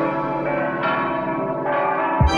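Bell chimes: ringing bell tones, with a new note struck about a second in and another near the end, each left to ring on.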